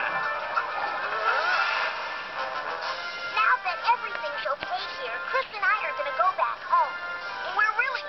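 Cartoon soundtrack heard through a TV: background music, joined from about three seconds in by a run of quick, rising-and-falling chirping calls.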